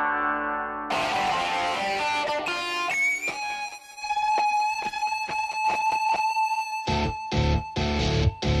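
Background music led by an electric guitar. An earlier plucked-string phrase ends about a second in, then the guitar holds one long high note over short rhythmic strokes. Heavy, chopped drums and bass come in near the end.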